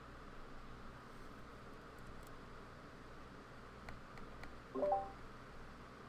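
Quiet room tone with a steady faint hiss, broken about four seconds in by a few faint clicks and, just before five seconds, by a brief pitched sound.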